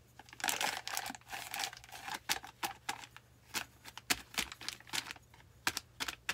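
Crumpled plastic bag crinkling as it is dabbed against a cement candle holder to sponge on paint: a dense run of crackling in the first couple of seconds, then scattered crinkles and ticks.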